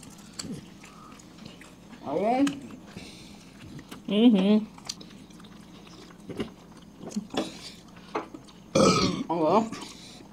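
Close-miked eating: soft chewing and small mouth clicks, with three short voiced sounds about two seconds in, about four seconds in and near the end.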